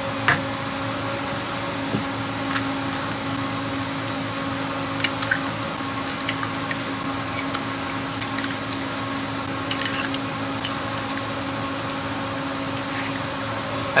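A steady machine hum with a constant low tone, like a running fan or appliance motor, with a few light clicks and cracks as eggs are broken by hand.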